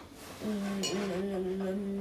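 A young boy's voice holding one long, steady sung note, starting about half a second in.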